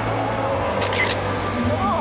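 A camera shutter clicking, a quick double snap about a second in, over music playing in a large hall and the chatter of a crowd.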